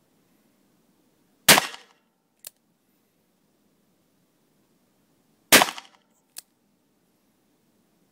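Two revolver shots about four seconds apart, each a sharp report with a short reverberant tail from the enclosed indoor range. A much fainter sharp click follows about a second after each shot. The revolver is being test-fired after a repair.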